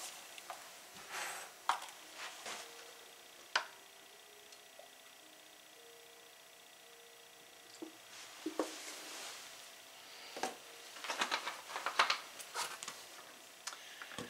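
Quiet handling sounds of vegetable oil being poured from a plastic bottle into a glass measuring bowl: scattered soft clicks and knocks, a nearly quiet stretch in the middle while the oil runs, then a cluster of small taps and clicks near the end as the bottle is capped and set down.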